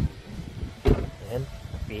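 A single sharp knock about a second in, with a few short bits of voice around it.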